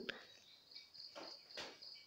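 Near silence: faint room tone with a thin, steady high-pitched tone that sets in about a quarter second in, and a couple of faint soft sounds in the middle.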